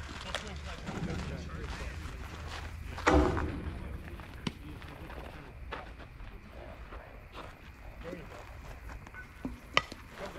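Indistinct voices with one short, loud shout about three seconds in and a few sharp clicks, over a low steady rumble.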